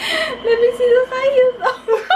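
A woman laughing hard: a long high-pitched laugh held on nearly one note for about a second, then short bursts near the end.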